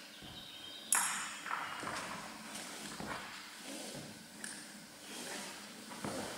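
A sharp metallic clink with a brief ring about a second in, then a few softer knocks: aluminium carabiners of a climbing quickdraw being clipped onto the rope.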